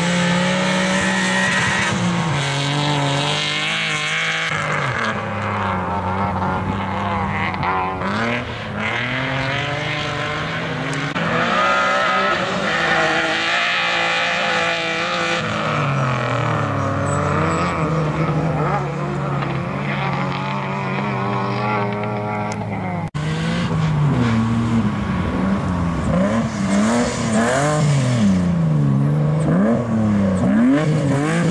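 BMW E30 rally car's engine revving hard, its pitch rising and falling over and over as the driver works up and down through the gears and lifts for corners. There is a sudden brief dip about two-thirds of the way through.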